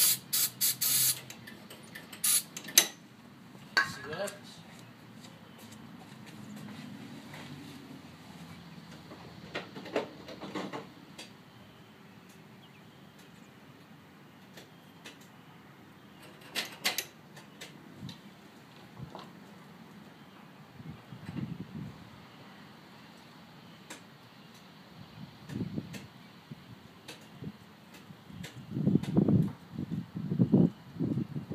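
Aerosol starter fluid sprayed in several short hissing bursts into the carburettor of a 1964 VW Beetle's air-cooled engine, followed by scattered clicks and knocks. No starter cranking is heard when the key is turned: the starter does not engage despite a new 6-volt battery.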